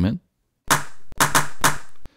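A phone-recorded 'mouse hit' sample played back from a Native Instruments Battery drum-sampler cell, triggered four times in quick succession after about half a second: short, sharp hits.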